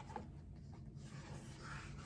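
Faint paper rustling and soft handling noises as a picture book's page is turned.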